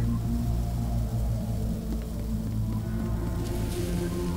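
Dark, low background score music with sustained deep notes, and a faint hiss near the end.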